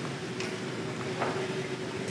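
Quiet room tone of a meeting room: a low even hiss with a faint steady hum and two faint ticks under a second apart.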